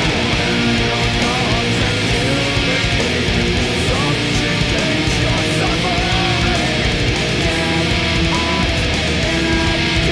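Seven-string electric guitar with high-gain distortion playing heavy metal rhythm riffs, through a Zoom G5n's Diezel amp simulation and a Mesa cabinet impulse, over the song's full backing track.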